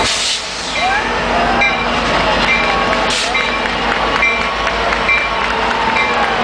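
Metrolink locomotive standing at a station, with a bell dinging steadily about once a second over the train's low running noise and crowd voices. A short hiss is heard about three seconds in.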